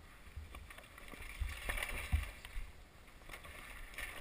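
Dirt bike rolling down a rocky dirt trail: a low rumble with a couple of knocks from the bumps, about a second and a half and two seconds in.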